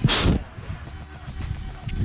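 Wind buffeting the camera microphone in a snowstorm, with a short loud rush of noise at the very start.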